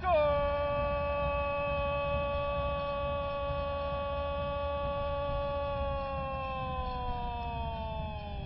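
A football commentator's drawn-out 'goool' shout for a goal: one long held note that slides slowly down in pitch over the last couple of seconds.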